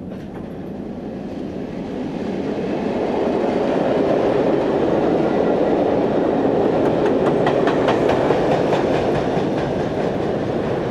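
Passenger train rolling by, its steady rumble growing louder over the first few seconds. Its cars cross a steel trestle in the second half, with a run of wheel clicks over the rail joints.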